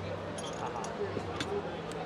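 A Mantus steel chain hook and anchor chain links clinking lightly as the hook is worked onto the chain, with a couple of sharp metallic clicks near the end, over a low steady hum and background voices.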